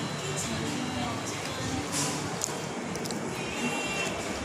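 Background music playing over the indistinct chatter of other diners.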